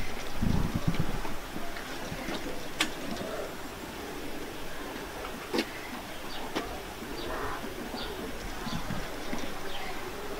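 A dove cooing, with a few sharp clicks, the loudest about five and a half seconds in.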